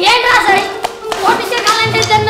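Children's voices calling out, punctuated by a few sharp hand claps.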